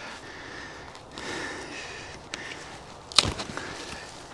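Quiet handling of a freshly skinned roe deer carcass, with one sharp crack about three seconds in as the small lower leg is snapped off at the joint.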